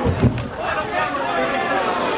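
Crowd chatter and voices in a small club between songs, with two low thumps about a quarter second apart near the start.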